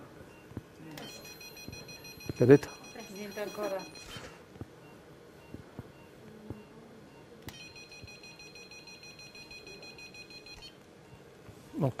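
Electrosurgical generator sounding its steady, high electronic activation tone twice, each for about three seconds, while the laparoscopic energy instrument is delivering current to the tissue.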